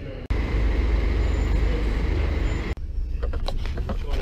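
Coach engine running: a steady low rumble with a faint high whine above it. Near the end it gives way to a quieter stretch of light clicks and knocks.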